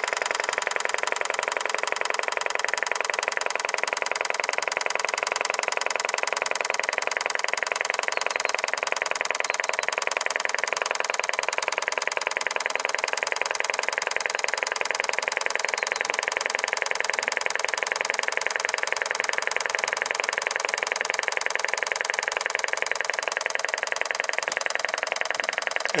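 Old Italian Z-motor compressed-air model engine running slowly with a steady, rapid, even ticking as its propeller ticks over near the end of its air charge.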